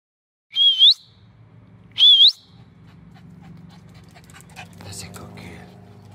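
A person whistles twice to call a dog, each whistle a short held note that rises at the end. After them comes a quieter low steady hum with light quick ticks.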